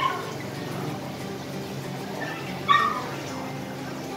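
A small dog gives one short, high yip a little under three seconds in, over a steady low hum.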